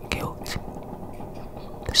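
Whispered speech: a voice whispering a few words, with soft hissing consonants.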